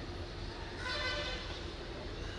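Steady low background rumble of street traffic, with a faint horn-like toot about a second in.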